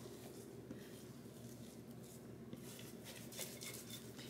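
Faint soft scraping and a few small ticks of a wooden spatula pushing thick batter out of a glass bowl into a baking pan, over quiet room tone.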